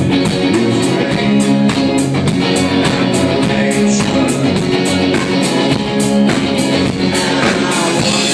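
Live rock band playing: electric guitar strummed over a drum kit keeping a steady beat, recorded loud on a phone's microphone.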